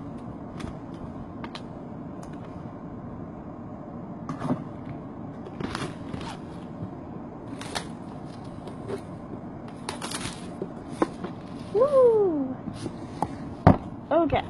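Plastic shrink-wrap being peeled and torn off a cardboard box, giving scattered crinkles and crackles. A short falling vocal sound comes near the end, then a single knock just before the end.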